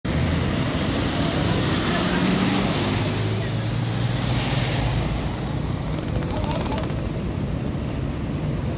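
Floodwater rushing across a road, with a motorcycle engine running as the bike rides through the water and splashes it up. The rush eases after about five seconds, leaving faint voices.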